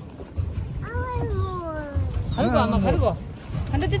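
A voice drawing out one long falling note, followed by a short spoken phrase, over a low rumble of wind on the microphone.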